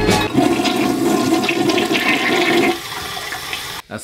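Household toilet flushing: a rush of water for about two and a half seconds, then a quieter run of water as the tank empties and refills. The flush tests a temporary repair to the toilet's tank mechanism.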